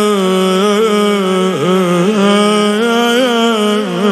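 A male elegy reciter's voice, amplified through a microphone, chanting a mourning lament in long, held, ornamented notes. The pitch wavers throughout and dips briefly about one and a half seconds in.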